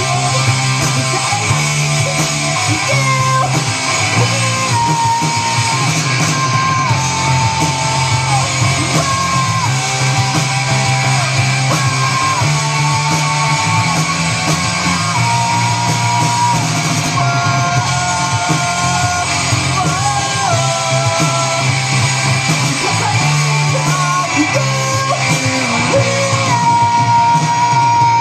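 Live punk-rock band playing loud: electric guitars, bass guitar and drum kit, with a male lead singer singing and yelling held notes over them.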